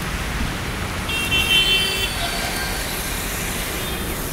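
Steady road-traffic rumble, with a vehicle horn sounding for about a second a little over a second in.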